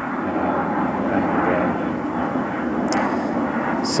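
An airplane flying overhead: a steady, fairly loud engine rumble with no rise or fall.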